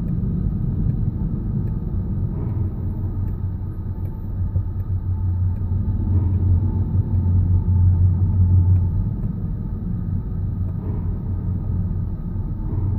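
Low, steady rumble of a car driving slowly, heard from inside the cabin: engine and tyre noise, swelling somewhat past the middle.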